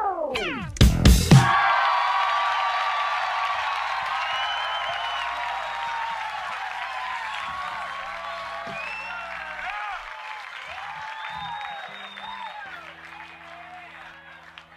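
Drum kit ending the groove with a few final hits about a second in, then the cymbals ringing out and slowly fading away.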